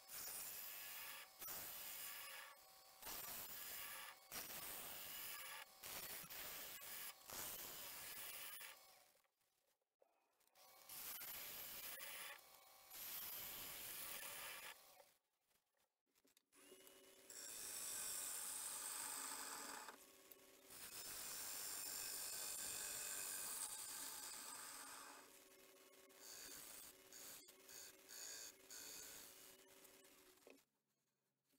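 A bowl gouge cutting the inside of a spinning beech bowl on a wood lathe, in a run of short scraping cuts with brief pauses. In the second half the lathe motor hums steadily under longer, smoother passes.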